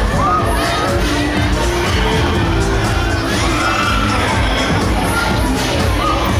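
Fairground ride in operation: riders on a spinning Huss Break Dance screaming and shouting over loud ride music. Two rising-and-falling screams stand out, one near the start and a longer one about three seconds in.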